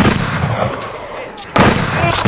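Snowboard hitting a metal rail with a loud bang and sliding along it with a fading noisy scrape, then a second loud bang from a board landing on a rail about one and a half seconds in.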